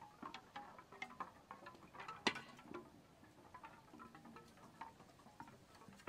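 Quiet, irregular tinkling of chime-like notes, with a sharper clink a little over two seconds in.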